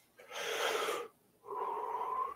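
A man takes a deep breath in and then blows it out hard through his lips, the out-breath carrying a faint whistle. It is the forceful exhale of a meditation breathing exercise, meant to 'pop' the energy field.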